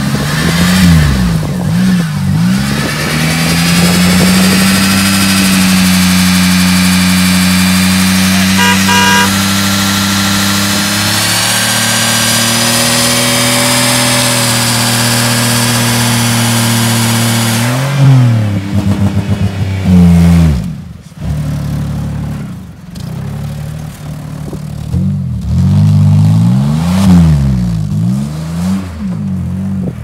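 Front-wheel-drive Pontiac Grand Prix doing a brake-held burnout, running without its muffler: the engine is held at high revs for about fifteen seconds while the front tyres spin, then the revs drop sharply. In the second half the engine is revved up and down repeatedly as the car pulls away.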